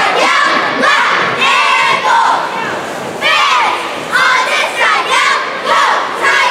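Cheerleaders shouting a cheer in unison, in loud rhythmic bursts about once a second, with a short pause a little before halfway.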